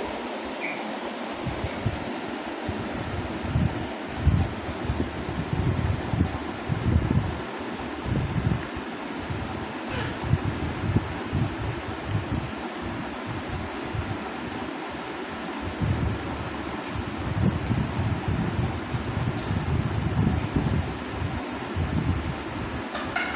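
Steady whir of a mechanical fan, with irregular low rumbles throughout, like air buffeting the microphone.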